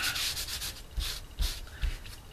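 A baby wipe rubbed in quick back-and-forth strokes over strips of masking tape, dabbing paint onto them: about five short, dry swishes. A few dull bumps of the hand against the work surface are heard between them.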